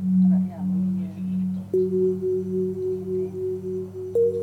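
Soft background music of sustained, gently pulsing tones like a singing bowl, with a second, higher note coming in a little before halfway through.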